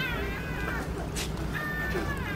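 Young Barbary macaque giving two high-pitched cries that fall in pitch: one right at the start, the second about one and a half seconds in.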